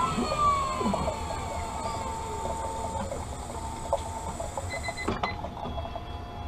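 Automatic optical lens edger finishing a cut on a plastic prescription lens: its whine falls in pitch and settles into a steady hum, with a short electronic beep near the end as the cycle completes.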